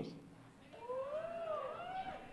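A person's drawn-out, high-pitched whine that wavers up and down in pitch, starting about a third of the way in, an embarrassed reaction to a teasing question.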